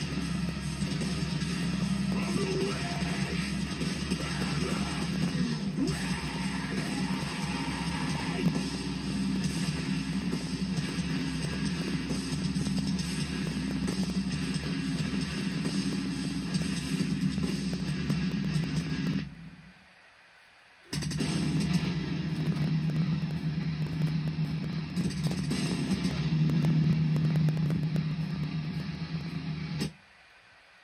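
Heavy metal song with distorted electric guitars and bass. It drops out for about a second and a half about two-thirds of the way through, comes back, and cuts off at the very end.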